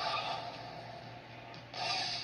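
Film car-chase sound of a speeding car: a rushing engine-and-tyre noise that fades over the first second and a half, then a sudden louder rush near the end.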